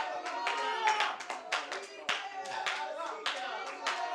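A congregation clapping in quick, uneven claps, with voices calling out faintly beneath.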